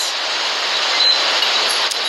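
Steady wash of ocean surf heard through a phone's microphone.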